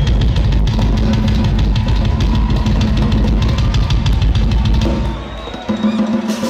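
Live rock drum solo on a full drum kit: fast, dense hits over a heavy kick drum. It eases off about five seconds in and picks up again near the end.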